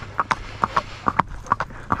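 A filly's hooves on an asphalt road, a quick, even clip-clop of about five hoofbeats a second as she moves along under saddle.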